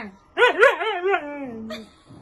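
A husky vocalizing in one drawn-out call rather than barking. Its pitch wavers up and down several times, then settles and slides lower before it stops, about a second and a half long. The husky is answering back as it is being called over.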